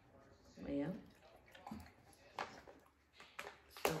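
Quiet, scattered clicks and crinkles of dogs being hand-fed treats from a paper bag, with a short murmured voice about a second in.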